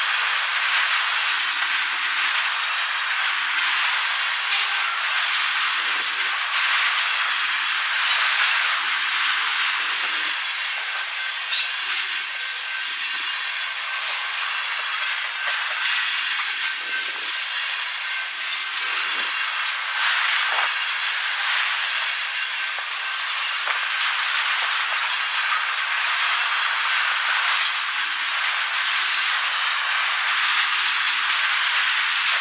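Loaded ethanol tank cars of a long freight train rolling past close by: a steady rush of steel wheels on rail, broken by scattered sharp clicks from the wheels.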